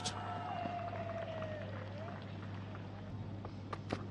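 Faint cricket-ground ambience on a TV broadcast: a steady low hum, with a long wavering tone over the first two seconds and a few light clicks near the end.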